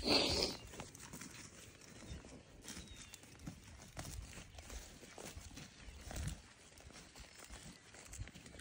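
Faint, irregular footsteps and rustling of a person walking across a field, with a brief louder rustle at the very start.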